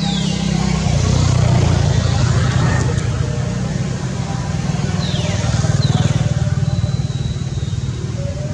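A motor vehicle's engine running, a steady low rumble that swells about a second in and again around six seconds in.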